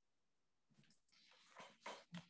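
Near silence on a video-call line, with a few faint short noises in the second half.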